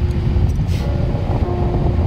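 Low road rumble of a moving car heard from inside the cabin, with a faint held pitched note at the start and again near the end.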